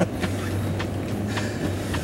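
Steady low hum inside a car's cabin, with a couple of faint clicks.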